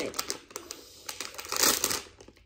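Packaging of a Breyer Stablemates Unicorn Surprise toy being handled and opened: irregular rustling and crackling, with a louder burst near the end.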